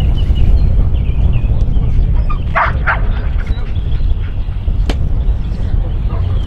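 A dog barks twice in quick succession about halfway through, over a steady rumble of wind on the microphone. A single sharp click follows a couple of seconds later.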